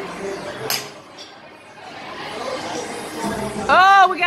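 A golf driver strikes a teed ball once, a single sharp click about two-thirds of a second in, over steady background music and venue chatter. Near the end a man's voice rises in an exclamation.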